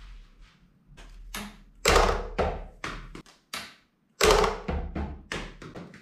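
A series of sharp knocks and thuds from a trick-shot catapult and large dice hitting a plastic table and posts. The two loudest come about two seconds in and just after four seconds, with lighter taps between and after them.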